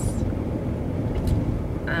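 Steady low rumble of a car heard from inside the cabin, during a pause in talk. A voice starts again near the end.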